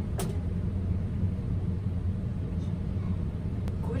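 A steady low rumble, with a sharp click just after the start and a fainter one near the end.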